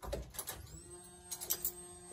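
A few clicks at the ignition switch, then the Nissan 240SX's electric fuel pump priming at key-on with a steady whine that starts under a second in. The pump now primes after bad grounds were fixed.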